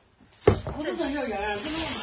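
A heavy earthenware wine jar knocks down onto a wooden table about half a second in, followed by a woman's drawn-out voice and a hiss near the end.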